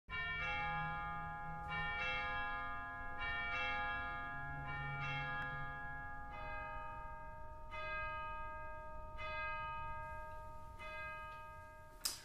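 Bells ringing in a slow series of single strokes, about one every second and a half, each tone ringing on into the next.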